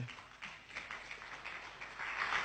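Audience applauding, light at first and building toward the end.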